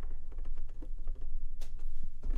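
Rapid run of small clicks from the Synthstrom Deluge's detented rotary select encoder being turned quickly through many steps.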